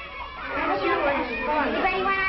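Several children's voices chattering at once, indistinct, building up after a quiet first moment; the old film soundtrack makes them sound thin, with no highs.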